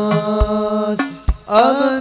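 Sholawat sung to hadroh frame drums. A voice holds one long note, then breaks off about a second in and slides up into a new phrase near the end, while drum strikes keep time.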